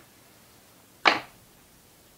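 One short, sharp swish-like knock about a second in as the artist's hand and drawing materials are moved off the oil-pastel drawing, with a faint click at the very start.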